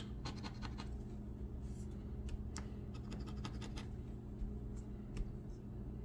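A metal coin scraping the coating off a lottery scratch-off ticket in short, irregular strokes, over a steady low hum.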